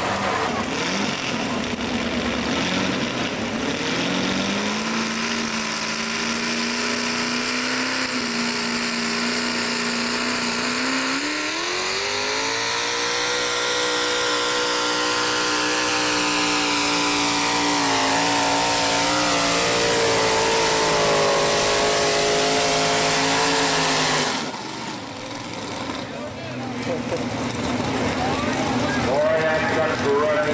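2WD Chevy pulling truck's engine running hard under load on a pull: it holds a steady pitch, rises steeply about a third of the way through and stays high at full revs, then cuts off suddenly near the end as the pull finishes.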